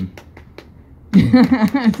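A few scattered sharp clicks over the first second, then a person starts speaking about a second in.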